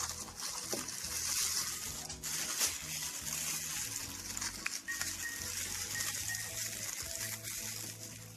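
A thin plastic bag rustling and crinkling as it is pulled and wrapped around a small plastic tray, a continuous crackly hiss with many small crackles.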